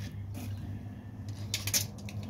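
A few faint clicks, then a short burst of rattling clicks about one and a half seconds in, fitting a steel tape measure being handled and let back into its case, over a low steady hum.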